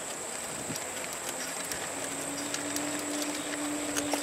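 Outdoor ambience recorded while moving along a wooded paved trail: a light steady hiss with a thin high-pitched tone, scattered small clicks and taps, and a low steady hum that comes in about a second in and holds.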